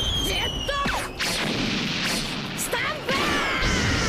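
Anime fight-scene audio: a continuous din of crashing, rumbling impact effects with a few high falling whines, and short shouted character voices.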